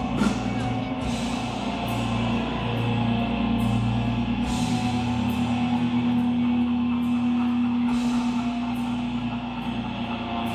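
Death metal band playing live: distorted electric guitars and a drum kit with cymbal crashes.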